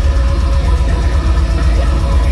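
Deathcore band playing live at high volume: a dense, bass-heavy wall of distorted guitars and fast drumming, heard from the crowd.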